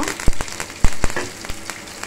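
Hot oil spluttering in a pan as green leaves and lentils fry in a tempering. Sharp irregular pops and crackles sound over a steady sizzle, the loudest about a quarter and three quarters of a second in.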